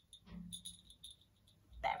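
A few faint jingles from a hand-held ring of small jingle bells as it is held after shaking, with a brief low murmur of a voice about a third of a second in.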